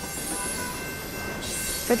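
Elevated subway train running along its tracks: a steady rumble of wheels on rail with a thin high squeal above it.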